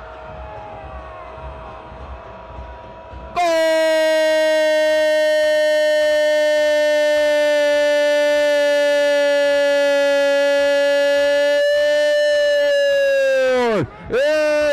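Football commentator's drawn-out 'goool' goal call: after about three seconds of quieter background, one loud shouted note held at a steady pitch for about ten seconds, sliding sharply down as his breath runs out at the end.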